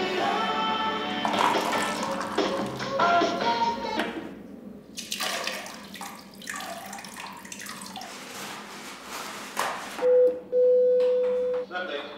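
Background music, then water running in short bursts from the push-button tap of a stainless-steel cell sink. About ten seconds in comes the loudest sound: the cell intercom's steady electronic call tone, one short beep and then one longer beep of about a second.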